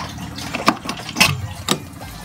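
Radiator filler cap being twisted open by hand: three sharp clicks about half a second apart as it turns on the neck.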